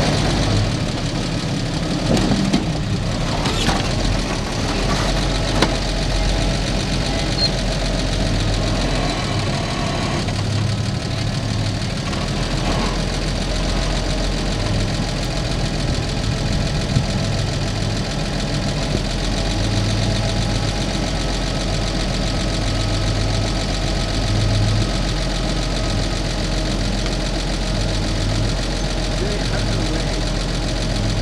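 A Toyota Land Cruiser's engine running slowly on a rock trail, then idling steadily, heard from the truck itself. A few short clunks come in the first seconds while the truck is still moving over rock.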